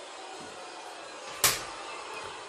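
A single sharp click about one and a half seconds in, over faint room noise.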